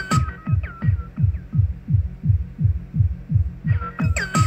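Techno drum-machine pattern from a Roland TR-8 with a steady kick drum at about two beats a second. Just after the start the hi-hats and upper synth parts are filtered away, leaving a muffled, throbbing kick, as in a filter sweep on a Korg Kaoss Pad KP2. The full-range pattern comes back near the end.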